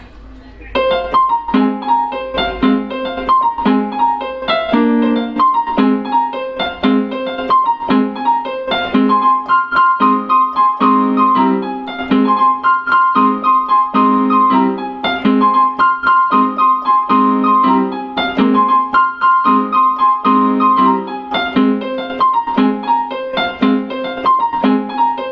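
Portable electronic keyboard played in a piano voice, starting about a second in: steady repeated chords in the lower register under a melody line higher up.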